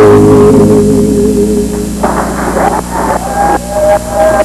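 A live band's final held chord fades out over the first two seconds, then audience clapping and cheering break out.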